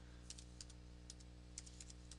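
Faint computer keyboard keystrokes: several small runs of quick key taps over a steady low hum.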